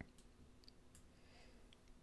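Near silence: room tone with a faint steady hum and a few faint clicks, one right at the start.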